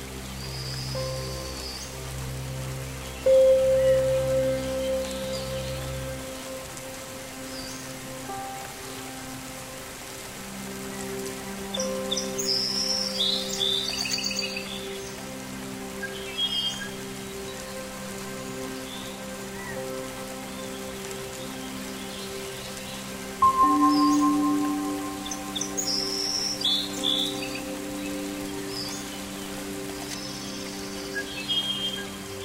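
Meditation music of sustained, slowly changing tones over steady rain, with birds chirping in short bursts at intervals. Two loud struck notes ring out and slowly fade, about three seconds in and again about two-thirds of the way through.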